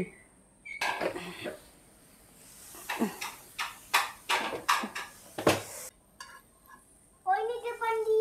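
An upturned frying pan being handled on a plastic cutting board with a cloth: a rustle, then a string of short sharp knocks as the pan is pressed and tapped to release the martabak. A voice speaks near the end.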